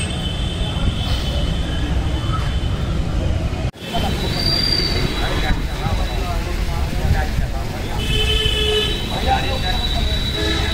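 Outdoor ambience: people talking in the background over a steady low rumble, with a few high steady tones. The sound cuts out for an instant about four seconds in at an edit.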